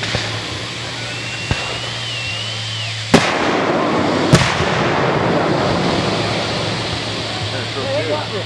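Aerial firework shell: a thin wavering whistle for about two seconds, then a loud bang just after three seconds and a second bang about a second later, followed by a noisy rush that fades over the next few seconds. A steady low hum runs underneath.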